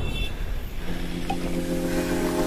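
A quiet stretch of electronic score: a low rumbling drone, joined a little under a second in by a held, steady chord.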